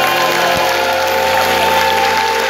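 A live band holds the closing chord of a song while the audience cheers, shouts and whistles over it, with applause.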